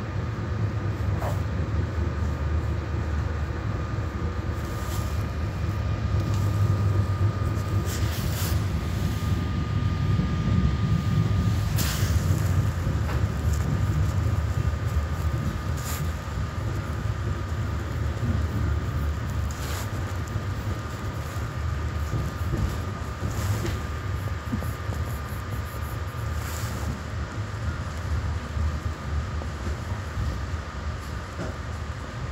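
Steady low rumble of a Metra Rock Island commuter train heard from inside the passenger coach, with a faint steady high tone and scattered sharp clicks from the track. The rumble eases over the second half as the train slows for its stop.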